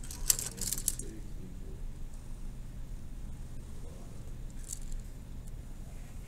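Pens and other small plastic desk items clicking and clattering as they are handled in the first second, then a steady low electrical hum with one faint click near the end.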